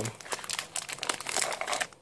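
Plastic and foil wrappers of a field-ration pack crinkling and rustling as the packets are handled and pushed back into their cardboard box, in irregular crackles that thin out near the end.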